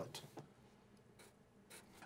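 Faint scratch of a Sharpie marker drawing a few short strokes on paper.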